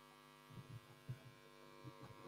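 Faint steady mains hum through the stage microphone's PA feed, with a few soft low thumps about half a second, a second and two seconds in from the stand microphone being handled and adjusted.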